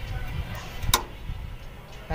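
A single sharp metallic click about a second in, a tool knocking against an air-line fitting at the truck's air dryer as the line is being undone, over a low rumble.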